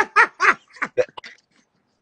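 A man laughing in a quick run of short bursts that get shorter and fainter and stop about a second and a half in.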